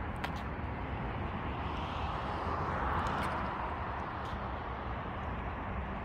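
Steady outdoor rushing noise that swells a little about halfway through and eases off again, with a few faint clicks.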